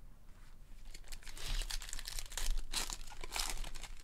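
A foil trading-card pack wrapper being torn open and crinkled by hand, starting about a second in, in a run of crackly rustles that peak near the end.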